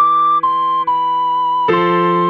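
Ocarina melody playing three notes stepping downward, D, C, B, over a sustained keyboard chord; a new chord is struck near the end.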